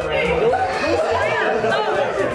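Several people talking and exclaiming at once in excited, high-pitched voices, over background music with a steady low beat.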